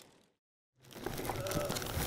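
Thin plastic bag crinkling and rustling as it is handled: the bag of two-part polyurethane seat-fit foam packed around a driver. It starts out of silence about a second in.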